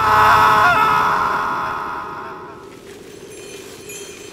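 A cartoon character's long, loud scream that starts suddenly and fades away over about two and a half seconds, as if being carried off.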